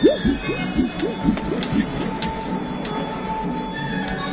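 Rope pulley squeaking and creaking in quick repeated squeals as a hanging dummy is hoisted on its rig, with film score music underneath.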